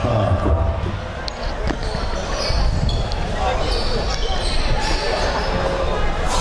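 Basketballs bouncing on a court at irregular intervals, with people talking in the background.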